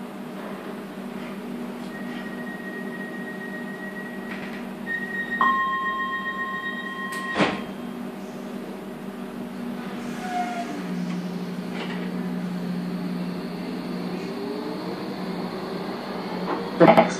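Docklands Light Railway train at a platform: a steady door warning tone sounds over the carriage hum, other tones join it, and it ends with a sharp thud as the doors close about seven seconds in. A few seconds later a low, steady motor hum sets in as the train pulls away.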